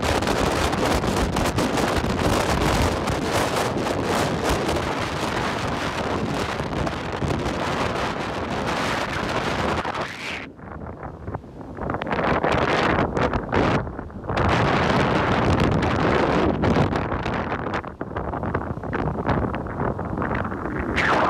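Strong, gusty squall wind from a hurricane's outer band buffeting the phone's microphone, with breaking surf underneath. The gusts ease for a moment about halfway through, then pick up again.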